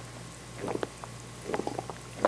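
Close-up gulps of a drink being swallowed from a glass, two short throaty swallows about a second apart.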